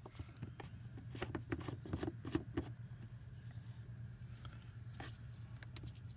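Hands screwing a brass blow-out adapter onto an RV's city water inlet: a run of small clicks and scrapes of the fitting over the first two and a half seconds, then a few faint ticks. A steady low hum runs underneath.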